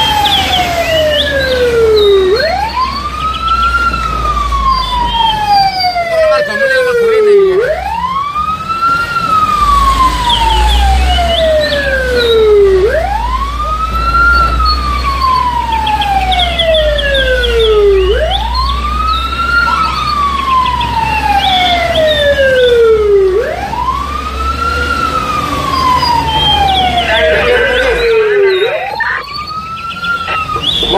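Emergency vehicle siren sounding a slow wail: each cycle rises quickly, then falls slowly, repeating about every five seconds, about six times. It is heard from inside a moving vehicle's cab over a steady low rumble.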